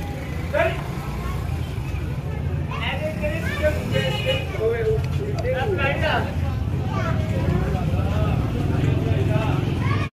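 Voices talking over a steady low rumble.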